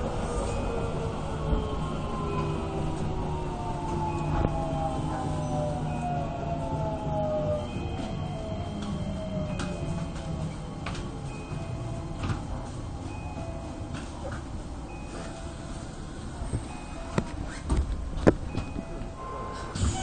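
Keisei 3050-series electric train heard from inside the cab as it pulls away: the traction motors' whine, several tones gliding slowly downward, over a low running drone. In the second half the wheels click sharply over the track several times.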